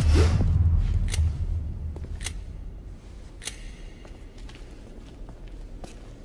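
Trailer sound design: a deep boom that fades over a couple of seconds, followed by sharp clicks about once a second.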